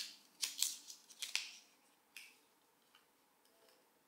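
Paper wrapping being peeled off a new AirPods Pro 2 charging case: a quick run of sharp crinkles over the first second and a half, then one more about two seconds in.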